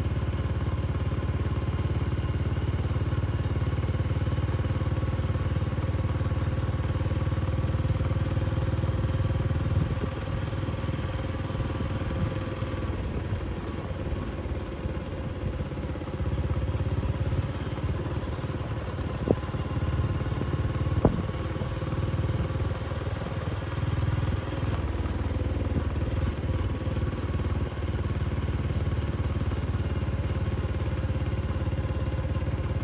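Engine of a two-wheel hand tractor (kor yun) running steadily while driving along a dirt track, easing off a little for a few seconds before the middle. Two sharp knocks ring out a little after the middle, under two seconds apart.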